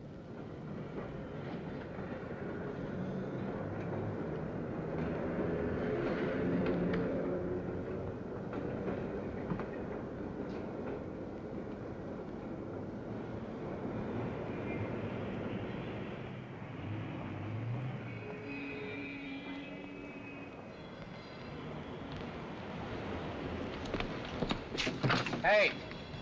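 Film soundtrack: a sustained music score over city street and traffic noise. A burst of louder, sharper sounds comes near the end, like car horns honking.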